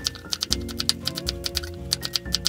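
Chef's knife chopping green onions finely on a wooden cutting board: quick, even strokes, about six or seven a second, each a sharp tap of the blade on the wood, over background music.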